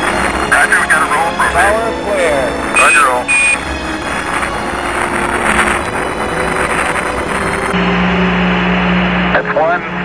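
Archival Apollo 11 mission radio: garbled, unintelligible voice transmissions over a steady static hiss, with two short high beeps about three seconds in. A low rumble runs underneath and cuts off near the end.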